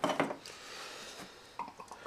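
Thin plastic cups clacking as they are handled at the start, followed by a soft, steady hiss of beer being poured from a bottle into a plastic cup for about a second.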